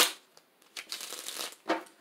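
A tarot deck being shuffled by hand: a quick swish of cards at the start, then a rapid run of small card clicks about a second in, and another brief swish near the end.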